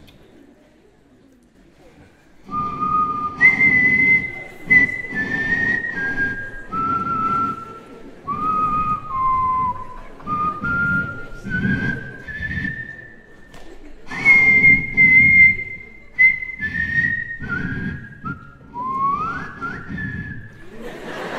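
A man whistling a slow tune into a handheld microphone, starting about two seconds in. It is a string of held notes that step up and down and ends on a quick upward slide.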